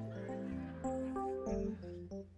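Church keyboard playing a slow communion song in sustained chords, the notes shifting every half second or so.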